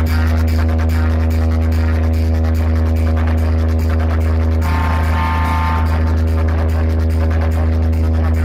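A loud, very deep bass drone held at one steady pitch from a DJ box-competition speaker stack, with a brief higher tone layered on top about five seconds in.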